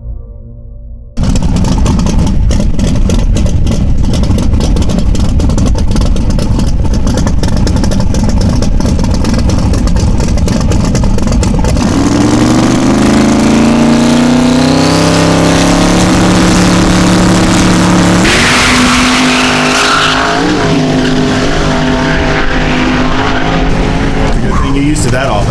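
Brief intro music cuts off about a second in. A twin-turbo Chevrolet Nova drag car's engine follows, running loud with a rapid crackle at the line. About twelve seconds in the car launches, and the engine note rises through the run with a gear change about six seconds later.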